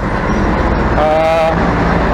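Steady low rumble of road traffic, with motor vehicle engines running close by.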